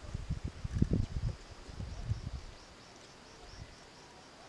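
Irregular low rumbling buffets of wind on the microphone, loudest in the first two and a half seconds and then dying away. Under it, faint high, evenly repeating insect chirps.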